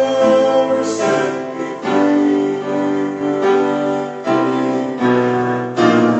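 Piano playing a slow worship song in held chords that change every second or so.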